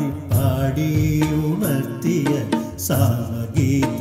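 A man singing a Malayalam film song into a microphone over instrumental accompaniment, holding long ornamented notes that glide up and down in pitch.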